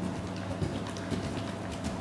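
A horse's hoofbeats on the soft sand arena surface, an irregular run of footfalls as it moves close past, over a steady low hum.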